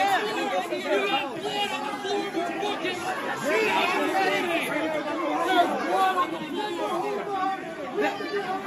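Many people talking and shouting over one another at once, an agitated jumble of voices with no single speaker standing out.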